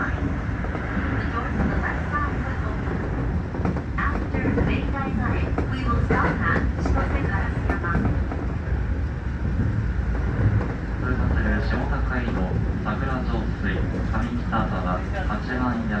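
Keio Line electric commuter train running, heard from inside the front carriage as a steady low rumble, with people's voices talking over it.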